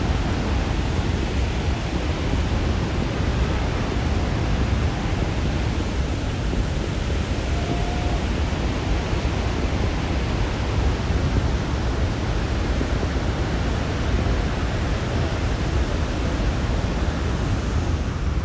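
Niagara Falls' water pouring down: a loud, steady rushing noise, heaviest in the low end, with no breaks.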